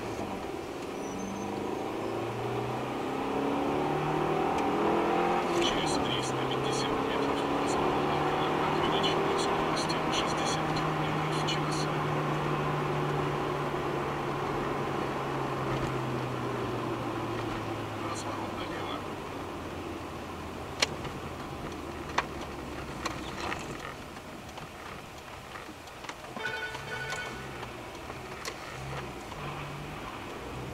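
Car engine and road noise heard from inside the cabin through a dashcam, the engine note rising as the car accelerates, holding steady while it cruises, then falling away as it eases off. Two sharp clicks come a little after the engine note drops.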